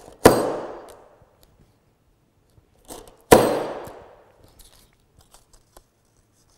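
A hand-held hammer punch fired down on paper twice, about three seconds apart, each a sharp metallic clang that rings out briefly. The punch is not cutting cleanly through the paper and has to be struck again.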